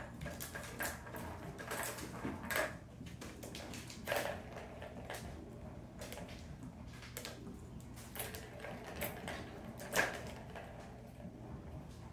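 Kittens playing on a hardwood floor: scattered light knocks, taps and scrabbles of small paws and batted toys, with the sharpest knock about ten seconds in.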